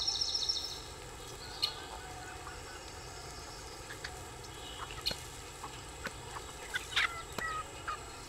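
Outdoor ambience with birds: a rapid high trill of repeated notes that stops about a second in, followed by a faint background with a few scattered short chirps and clicks.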